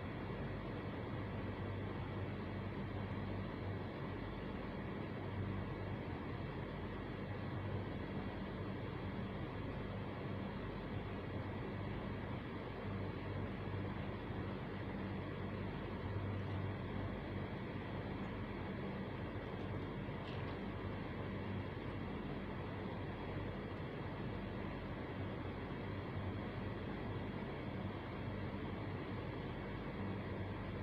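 Motorcycle engine running steadily under way, with road noise.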